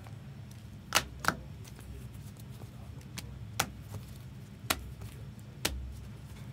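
Rigid plastic card holders (top loaders) clicking and tapping against each other and the table as the cards are handled. About six short, sharp clicks at irregular intervals, two close together about a second in, over a steady low hum.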